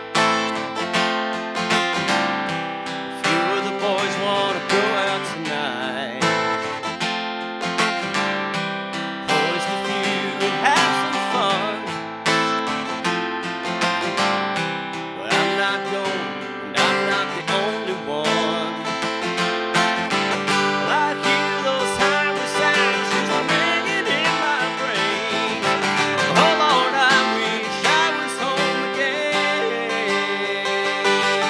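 Acoustic guitar strummed in a steady rhythm, playing chords of a song.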